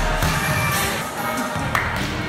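Background music with steady held tones, and a single sharp knock near the end.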